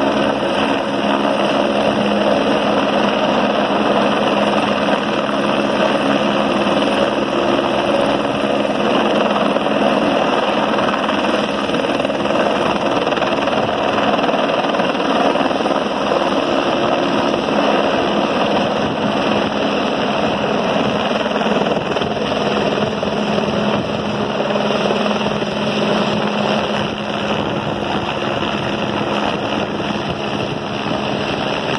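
Helicopter hovering close by with a water bucket slung below it, its rotor and turbine running loud and steady while the bucket is filled from a ground tank, then lifting away, the sound easing slightly near the end.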